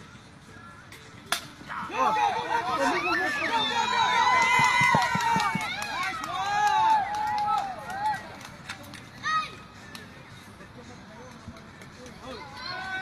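A baseball bat strikes the ball with one sharp crack, and about half a second later many voices break into shouting and cheering for around five seconds as a run scores. A short burst of shouts follows a little before the end.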